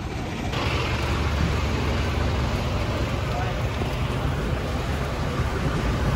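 Steady rumble of a fire truck's engine running at a fire scene, starting abruptly about half a second in.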